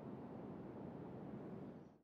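Faint, steady background noise with no distinct sound in it, fading out near the end.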